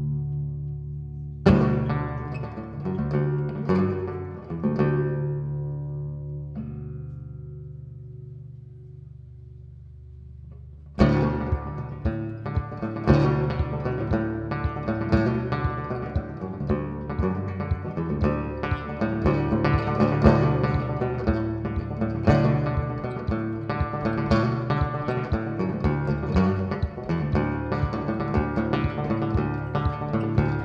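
Banjo played solo as an instrumental intro. A few chords are left to ring and die away slowly, then about eleven seconds in a steady picking rhythm starts and keeps going.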